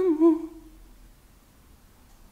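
A person's voice humming a single wavering held note that slides down slightly and fades out about half a second in, followed by quiet room tone.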